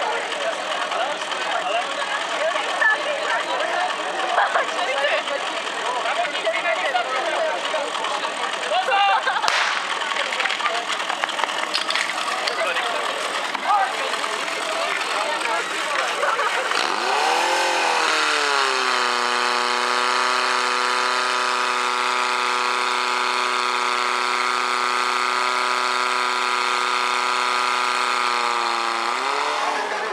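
Spectators shouting and cheering, with a sharp crack about nine seconds in. About seventeen seconds in, a portable fire-pump engine revs up to a high, steady pitch. It holds there for about ten seconds while pumping water through the hose lines, then drops back near the end.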